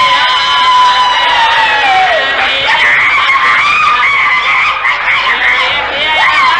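A high-pitched voice holds one long note that falls away about two seconds in, then several voices overlap with wavering pitch.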